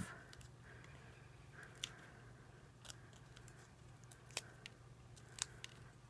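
Faint, scattered small clicks and crackles of fingers picking the release backing off a foam adhesive dimensional and handling a paper cut-out, the sharpest about four and a half and five and a half seconds in.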